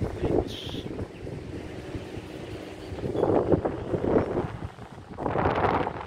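Wind buffeting the microphone in irregular gusts, strongest about three seconds in and again near the end, with a short high-pitched sound about half a second in.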